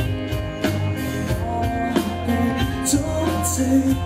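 Live pop-rock band playing: guitars, bass and drum kit with a steady beat, leading into the first verse of the song.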